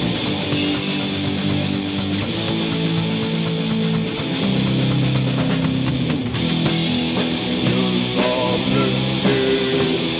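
Raw, lo-fi black metal demo recording: heavily distorted electric guitar chords over fast, regular drumming. The rapid drum strokes stop about two-thirds of the way in, and a higher melodic line enters near the end.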